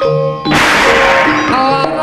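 Jaranan ensemble music: pitched metal percussion struck in a repeating pattern, with a loud crash about half a second in that rings away over about a second, followed by a melody that slides between notes.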